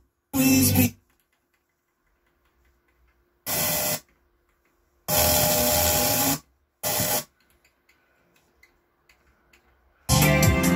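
Onkyo T-4430 FM tuner being tuned across the band and heard through a speaker: four brief snatches of station audio, each starting and cutting off abruptly, with muted near silence between stations.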